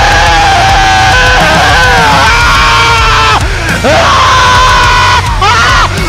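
Loud metal song with distorted guitars and drums under a vocal line that holds long, gliding notes, with some yelling. The line breaks off briefly about halfway through and again near the end.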